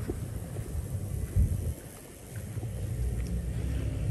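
Wind buffeting the phone's microphone outdoors: an uneven low rumble that gusts up and dies back, with one sharp gust about one and a half seconds in.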